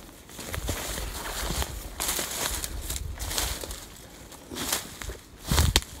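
Footsteps through dry grass and fallen leaves, with brush rustling, and a louder low thump near the end.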